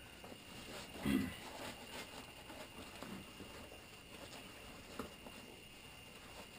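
Quiet rustling of a flak vest's fabric being handled, with a short low grunt-like vocal sound about a second in and a light click about five seconds in.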